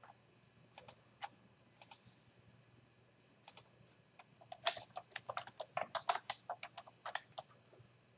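Typing on a computer keyboard: a few separate clicks in the first two seconds, then a quick run of keystrokes, about four or five a second, as a file name is entered.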